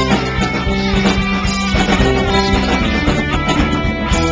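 Live rock band playing loudly: electric guitars, bass guitar and drums.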